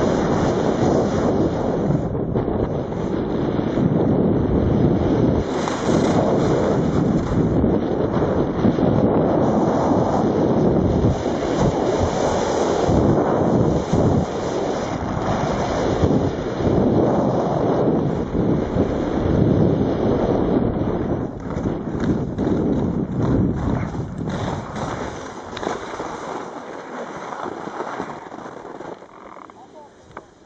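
Wind buffeting the camera's microphone as a skier descends the slope at speed, a loud, steady rush that fades over the last few seconds.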